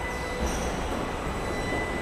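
Steady mechanical din of an automated car assembly line with industrial robot arms at work, with a thin high whine over it from about half a second in.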